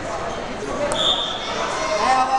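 Crowd chatter echoing in a gymnasium, with a sharp click and then a short, high whistle blast about a second in.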